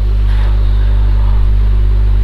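Steady low hum, as loud as the voice around it, holding one pitch without change.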